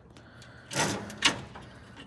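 Channel-lock pliers working a siliconed-in temperature probe loose from aluminium radiator fins: a short scraping rasp about three-quarters of a second in, then a sharp click.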